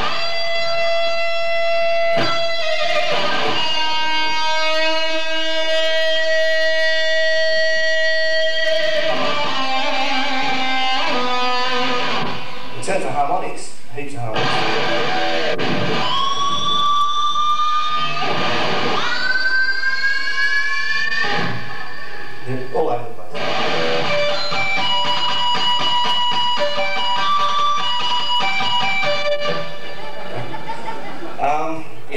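Jackson Soloist neck-through-body electric guitar playing a lead: long sustained notes, then string bends that glide upward in pitch, then quicker notes near the end. The long sustain on the bent notes shows what the player credits to the one-piece neck-through body and pickups whose magnets lay a field across the whole string.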